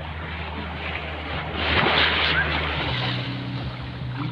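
Small sea waves washing onto a sandy, rocky shore, with wind on the microphone. The sound swells for about a second near the middle. A low steady hum runs underneath.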